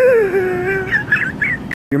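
A person laughing in one long, high, wavering tone that falls in pitch, then a few short squeaky high notes; the sound cuts off abruptly near the end.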